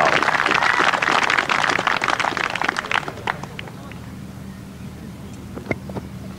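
Golf gallery applauding a holed putt, the clapping dying away over about three seconds and leaving a faint low hum.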